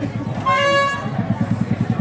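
A single horn toot about half a second in, one steady pitch lasting about half a second, over a low, fast, steady throbbing.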